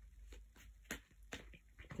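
Tarot cards being handled and laid down: a few faint, sharp clicks and taps, the two clearest a little under and a little over a second in.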